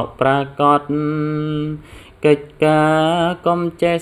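A man chanting Khmer verse in the slow, sung style of kap poetry recitation, drawing out long held notes, with a brief pause about two seconds in.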